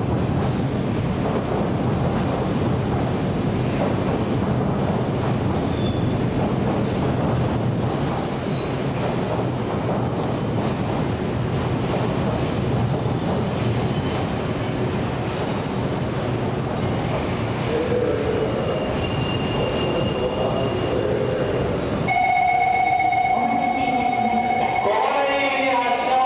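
24-series sleeper passenger coaches rolling along the rails into a station platform, a steady rumble of wheels on track. About two seconds before the end a high, steady squeal comes in.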